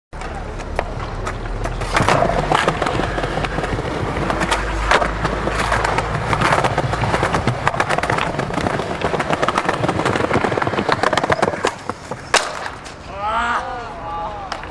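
Skateboard wheels rolling over smooth pavement, with repeated sharp clacks of the board's tail popping and landing. A loud single impact about twelve seconds in, then a person's voice calls out near the end.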